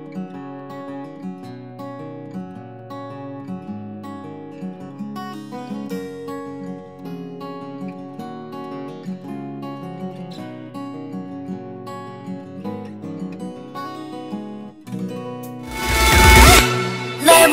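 Quiet background music led by a plucked acoustic guitar playing a gentle run of notes.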